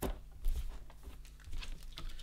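Handling noise from a paper sticker sheet: light rustling and crinkling, with a sharp click at the start and a soft knock about half a second in.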